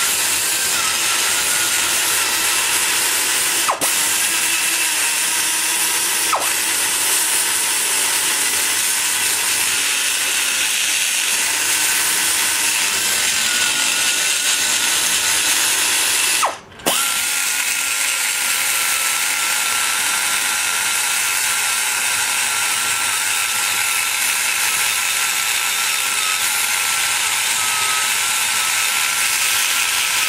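Die grinder with a long-shank bit running steadily while grinding inside the cast-iron exhaust port of a small-block Chevy cylinder head: a high, steady whine over a grinding hiss. It cuts out for an instant just past halfway and starts again.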